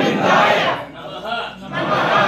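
A large group of men and boys reciting mantras loudly in unison, as at an upanayana thread ceremony. There is one loud surge of many voices at the start and another near the end.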